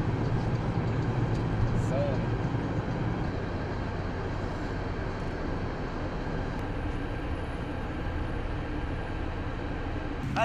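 Steady low rumble of a moving coach heard from inside its cabin: engine and road noise, with faint voices.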